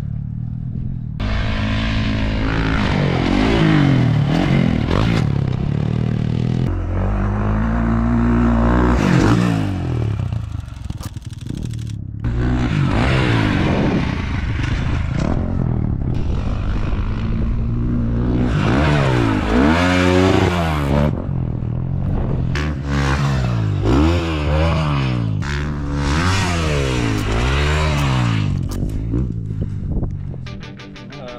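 Dirt bike engines revving up and down again and again, the pitch rising and falling in repeated sweeps as the bikes are ridden over jumps.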